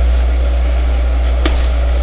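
A steady low hum, with a single sharp click about a second and a half in.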